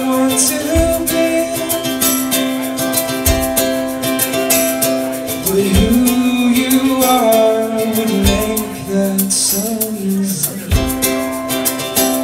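Live band playing an instrumental passage: a strummed ukulele over bass guitar and drum kit, with a low drum beat about every two and a half seconds.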